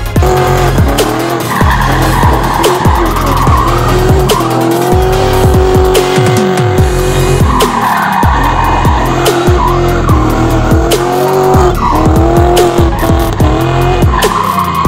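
Drift cars sliding with tyres squealing and engines revving up and down, over electronic music with a heavy bass beat.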